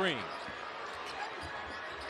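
Basketball arena crowd noise with a basketball being dribbled on the hardwood court during a drive to the basket.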